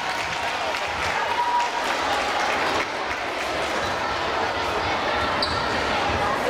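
Footsteps of a group of dancers walking onto a hard sports-hall floor, over the chatter of a crowd.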